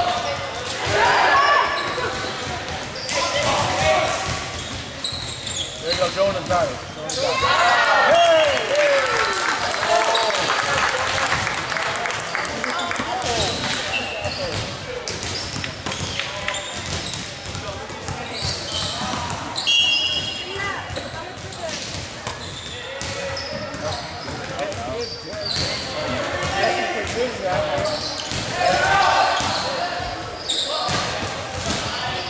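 Indoor volleyball play on a hardwood gym court: scattered ball hits and bounces over a constant murmur of voices and calls from players and onlookers, echoing in the gym.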